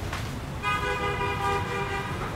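A vehicle horn sounding one steady held note for more than a second, starting a little over half a second in, over a low steady background rumble.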